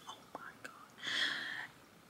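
A woman's breathy, unvoiced exhale, like a sigh, lasting under a second in the second half, after a couple of faint mouth clicks.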